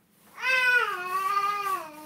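A cat meowing: one long, drawn-out meow starting about half a second in, falling in pitch toward its end.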